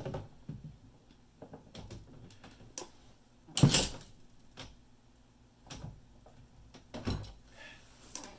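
A loud sharp crack a little before halfway through as a battery pack's plastic cell holder and circuit board snap apart, bent over the edge of a desk drawer. Small clicks and knocks of plastic being handled come before and after it, with a second, smaller knock near the end.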